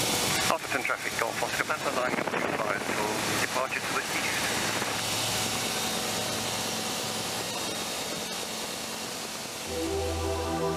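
Aeroprakt A22 Foxbat microlight's engine running at takeoff power, with propeller and wind noise in the cockpit during the takeoff roll and lift-off. Indistinct voices are heard over it in the first few seconds, and music starts near the end.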